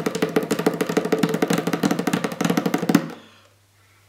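A pair of Mano bongos played with bare hands in a fast, continuous run of rapid strikes that stops about three seconds in.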